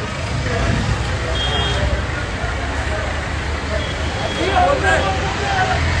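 A steady low rumble of vehicles, with indistinct voices of a crowd in the background.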